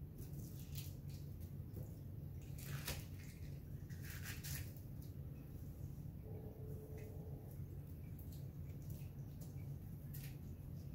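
Soft, wet handling sounds of raw thick-cut bacon strips being peeled back and laid across one another on plastic wrap, a few faint squishes and rustles over a steady low hum.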